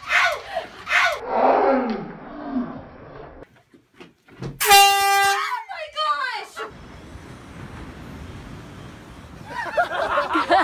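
A loud horn blast of under a second at one steady pitch, cut off sharply, then a shrill cry that swoops up and down in pitch. Voices are heard shouting before the blast.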